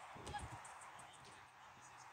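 A football kicked once on the pitch: a short dull thud about a third of a second in, over faint outdoor background.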